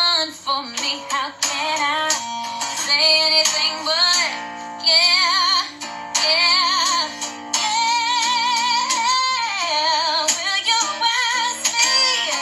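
A woman singing a slow gospel ballad, holding long notes with vibrato and sliding through quick runs, over a soft accompaniment.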